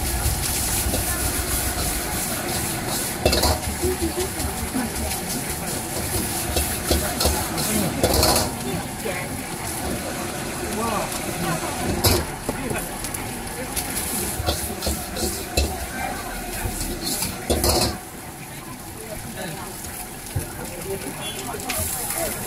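Egg fried rice sizzling in a wok over a high flame, with a metal ladle and spatula scraping and clanking against the wok as it is stirred and tossed; a few sharp clanks stand out a few seconds apart. A low rumble underneath drops away about three-quarters of the way through.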